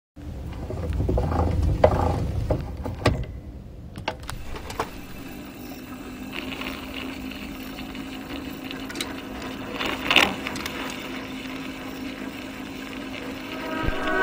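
Edison phonograph mechanism being handled and set going: a low rumble with clicks over the first three seconds, a few sharp clicks as its levers are set, then a steady running hum with a faint hiss from about six seconds in.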